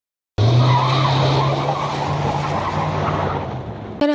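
Tire screech sound effect, starting abruptly a moment in, with a steady low drone under it, easing off slightly toward the end.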